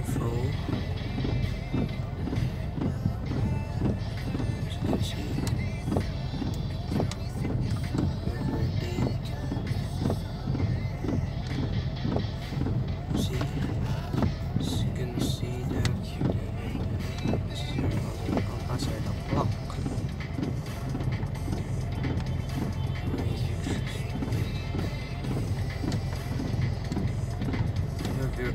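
Music playing from the car's CD stereo over the steady low rumble of the running engine, heard inside the cabin.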